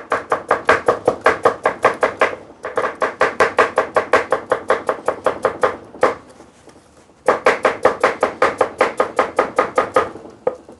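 A large kitchen knife slicing raw potatoes on a wooden cutting board, with fast, even knocks of the blade on the board at about six a second. The knocks come in three runs, with a brief break about two and a half seconds in and a pause of about a second after six seconds.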